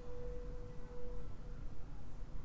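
A single sustained ringing tone dies away a little over a second in, leaving a low, steady rumble.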